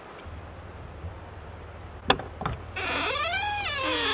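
Two sharp clicks of the teardrop trailer's door latch, then a drawn-out creaking squeak from the door hinges that rises and falls in pitch as the door swings open; the doors are very squeaky.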